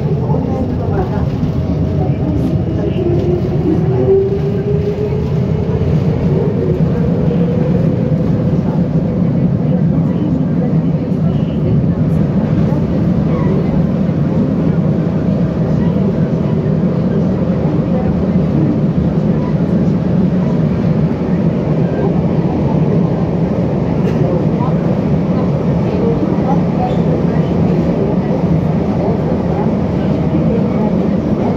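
Metro train 81-553.3 heard from inside the car as it pulls out of a station. A motor whine rises in pitch over the first several seconds while the train accelerates, then gives way to a steady running rumble in the tunnel.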